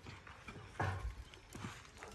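A few soft, irregular knocks and scuffs of a man climbing a rough wooden pole ladder, his hands and shoes bumping the wood.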